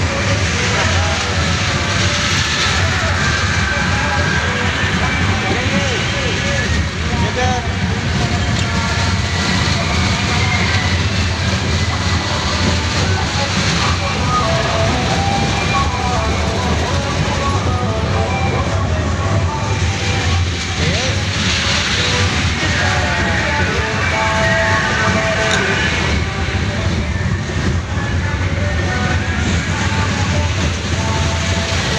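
Fairground kiddie train ride running with a steady low rumble, mixed with the chatter of many voices around it.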